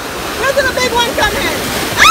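Sea surf surging and washing over shoreline rocks: a steady rush of churning seawater.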